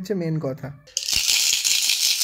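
A baby's rattle toy shaken continuously, a fast dense rattling that starts about a second in, after a short stretch of voice.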